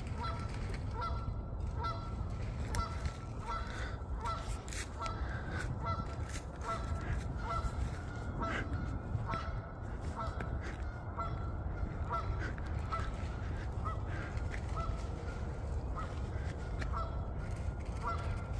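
Goose-like honking calls, short and repeated about twice a second, over a low steady rumble.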